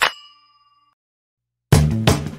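A single bright metallic ding that rings for about half a second and fades, followed by dead silence; music starts again near the end.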